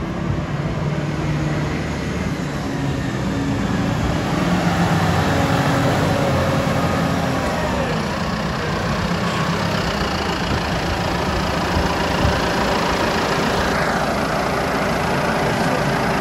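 Deutz-Fahr 6135 tractor engine running as the tractor drives up the road, getting louder about four seconds in as it comes close, with a steady rush of tyre and road noise.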